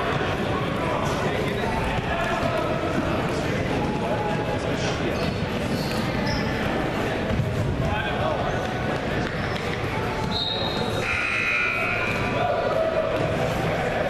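Indistinct voices echoing in a large gym hall, with repeated thuds and a few short high squeals.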